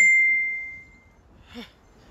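Smartphone Facebook Messenger message notification: a single high ding that starts sharply and rings away over about a second.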